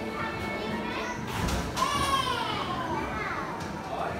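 Young children's voices as they play and clamber about, with a long high-pitched call that glides down in pitch about two seconds in.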